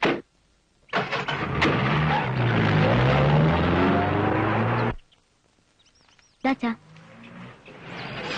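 Hindustan Ambassador car's engine revving as the car pulls away, loud for about four seconds with the pitch dipping and rising, then cutting off abruptly. A short knock comes just before it.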